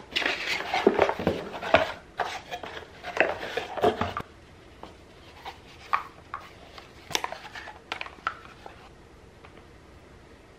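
Cardboard mailer box and paper packaging being opened and handled: close rustling, scraping and clicks for about the first four seconds, then quieter scattered taps and ticks as a small jewellery box, pouch and chain are handled.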